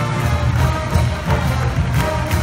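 Large marching band playing, with brass over a steady beat of drums.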